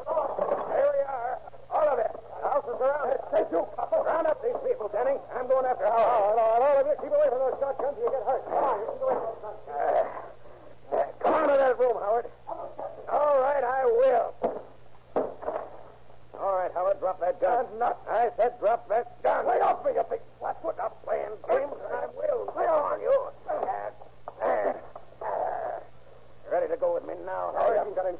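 Voices speaking almost without a break, on an old broadcast recording with a steady low hum.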